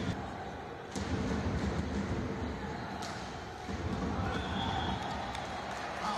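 Volleyball rally in a sports hall over steady crowd noise: a sharp ball strike about a second in, another about three seconds in, then a short blast of the referee's whistle ending the point, about four and a half seconds in.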